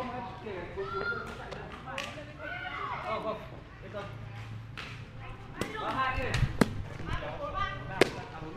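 Faint background chatter of voices, then from about five and a half seconds in a few sharp taps of a shuttlecock being kicked back and forth in a đá cầu rally.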